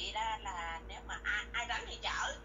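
Speech only: a conversation heard through a telephone line, thin-sounding.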